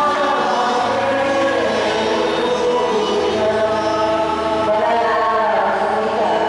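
Church choir singing a hymn in long held notes, the pitch moving about once a second.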